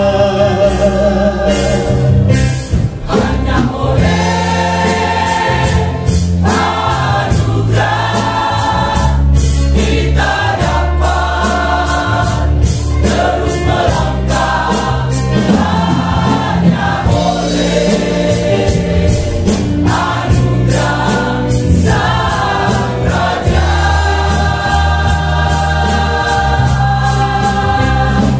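Mixed choir of men's and women's voices singing an Indonesian-language gospel hymn.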